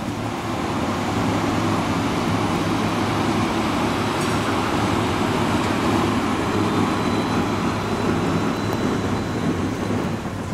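A tram running past on its rails: a steady rolling rumble of wheels on track with a low hum under it.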